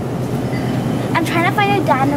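Steady low rumble of a shopping cart rolling along a store aisle, with a person's voice wavering in pitch from about halfway through.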